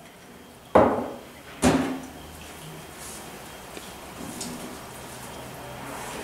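Two sharp knocks of a teaspoon and china mug being handled at a stainless steel kitchen sink, about a second apart, each with a brief ringing tail, followed by faint handling sounds.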